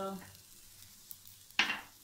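Faint, steady sizzle of garlic-chilli paste and spices frying in a little oil in a metal kadhai over a low flame, with a short, sharp hiss about one and a half seconds in.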